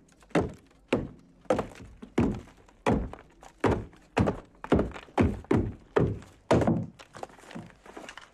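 A claw hammer striking a wallpapered plaster wall and breaking through it, about thirteen blows at roughly two a second, coming a little faster in the second half.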